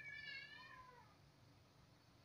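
A faint, drawn-out high-pitched cry that slides down in pitch and fades out about a second in.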